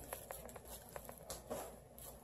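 Faint chewing of mouthfuls of brownie, with many small, soft, wet clicks from mouths working the chewy cake.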